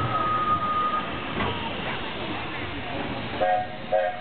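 Mine-train roller coaster rolling slowly along its track, a steady rumble with a thin high tone that stops about a second in. A short pitched sound comes near the end, with voices.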